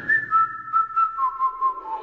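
A whistled tune in the background music: one clear tone held for a moment, then stepping down twice to lower notes, over a faint beat, as the opening of a song.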